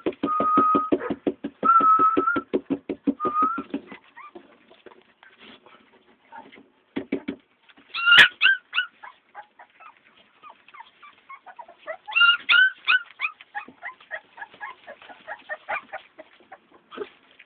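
Dogs whining: a drawn-out high whine over a fast, regular pulsing for the first four seconds. Then short whimpers and yelps, loudest about eight seconds and again about twelve seconds in.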